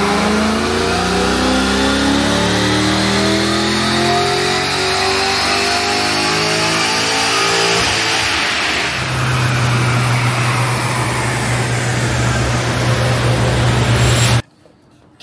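Holden HSV's LS V8 with a Chopper Reid camshaft making a full-throttle run on a chassis dyno, its note climbing steadily for about eight seconds up to around 6800 rpm. The throttle then closes and the engine settles to a steady low note.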